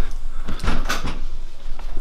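A handful of short knocks and clunks, bunched about half a second to a second in, like a door or cupboard being handled.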